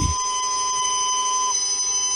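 Data tones played from a vinyl record that holds an audio recording of a bootable DOS disk image for an original IBM PC: several steady electronic tones at once, the loudest stopping about one and a half seconds in. It sounds a little like an old dial-up modem.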